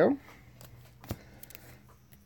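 Baseball cards being handled and moved by hand: light rustling with a few soft clicks and taps, the sharpest about a second in.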